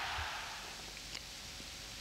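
Faint steady hiss of background noise, dipping slightly in level over the first second.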